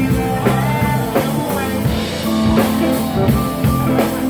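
A live rock band playing a song: a man singing over electric guitar, bass, drums and keyboard, with a steady drum beat.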